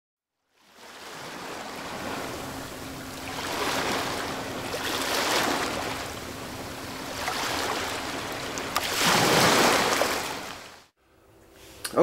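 Rushing, surging water noise that swells and ebbs every second or two, fading in just under a second in and fading out near the end, with a faint steady hum underneath.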